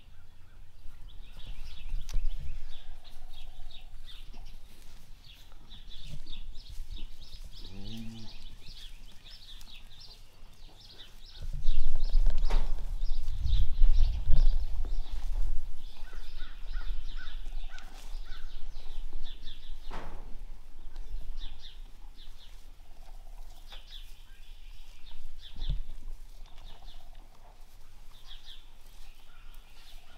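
Small birds chirping over and over in a barn, with a short rising animal call about eight seconds in. Around the middle comes a few seconds of loud low rumbling, the loudest part, and a few sharp knocks are scattered through.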